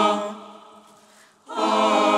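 Mixed choir singing a held chord that cuts off just after the start and dies away over about a second, then the choir comes in again with a full sustained chord about a second and a half in.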